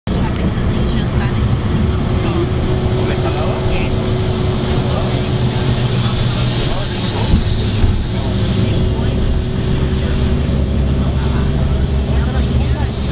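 Road noise from inside a moving vehicle: a steady low engine and tyre rumble with a constant hum running through it.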